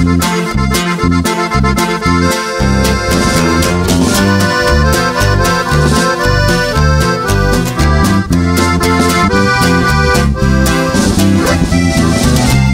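Norteño band playing an instrumental passage live: accordion melody over a steady, stepping bass line.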